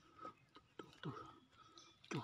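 Near silence with a few faint, short murmured voice sounds that fall in pitch.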